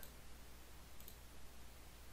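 A faint computer mouse click about a second in, over a low steady hum; otherwise close to silence.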